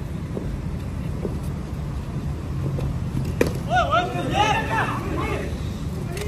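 Steady low rumble of a noisy indoor sports hall. About three and a half seconds in comes one sharp crack of a cricket ball, followed at once by players' calls and shouts.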